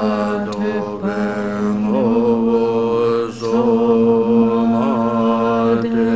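One voice chanting a slow melody in long held notes. The pitch steps up slightly about two seconds in, with short wavering turns there and again near the end.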